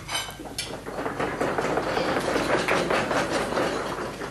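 An audience knocking on tables all at once, a dense patter of many overlapping knocks that swells after about a second and thins out near the end: a show-of-hands vote done by knocking.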